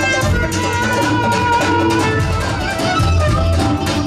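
Dance music with a violin playing the melody over plucked strings and a repeating bass beat.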